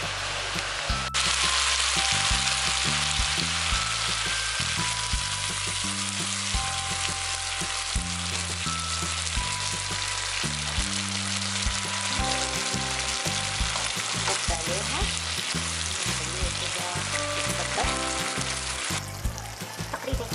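Chicken strips, bell peppers and carrot sizzling in a wok in a soy-based sauce. The sizzle is a steady hiss that starts abruptly about a second in, with background music underneath.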